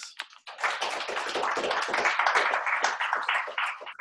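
Applause: hands clapping quickly and densely, starting about half a second in and dying away just before the end.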